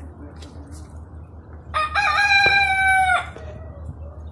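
A rooster crowing once: a single loud, drawn-out call of about a second and a half, starting just under two seconds in.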